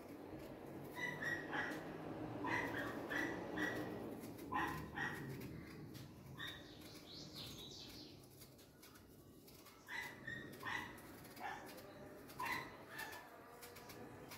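An animal in the background giving repeated short, high-pitched calls in little clusters of two or three, with a lull about two-thirds of the way through.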